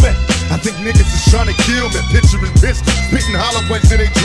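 Hip hop track playing: a rapped vocal over a beat with heavy bass and regular drum hits.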